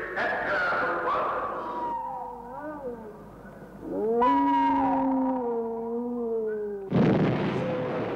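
Eerie, drawn-out animal howls. Several overlapping cries gliding in pitch come first, then one long wavering howl is held for about three seconds. A sudden loud crash cuts it off near the end.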